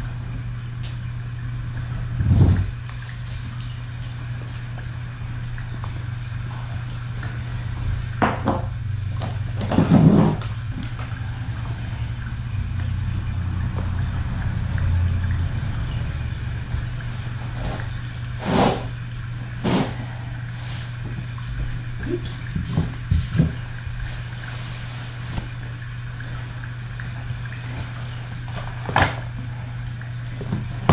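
A steady low hum, with scattered short knocks and rustles as a person moves about the room handling things.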